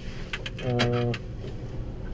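McCormick G135 Max tractor's six-cylinder FPT diesel running steadily, heard from inside the cab, with the power take-off just engaged. A short voiced "uh" from a man about a second in.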